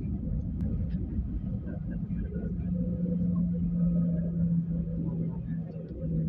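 Cabin rumble of a Boeing 737-900ER on the runway at takeoff, heard from a window seat, with a steady low engine tone from its CFM56 turbofans coming in about three seconds in and holding.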